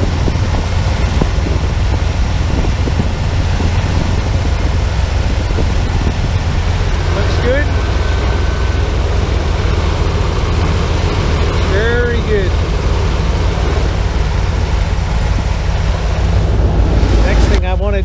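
Ford Econoline 250 van's engine idling steadily, heard from beneath the vehicle just after an oil top-up.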